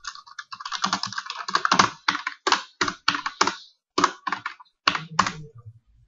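Typing on a computer keyboard: a quick run of keystrokes, then slower, separate key presses.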